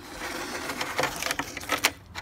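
Plastic milk crate rattling and knocking against a bike's metal rear rack as it is lifted off, a run of irregular clatters with sharper knocks about a second in and near the end.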